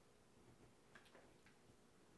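Near silence: room tone with a low hum, broken by a few faint ticks about a second in.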